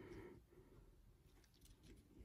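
Near silence, with faint light rustling and ticks from a small plush toy being turned over in the hand, heard more towards the end.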